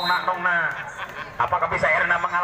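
A man's voice shouting drawn-out cheers, one call falling in pitch, with a brief lull just after the middle.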